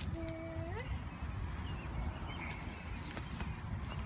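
Faint knocks and rustling as a bleached driftwood branch is handled and set down on a mulched garden bed, over a steady low rumble, with a few light clicks about three seconds in.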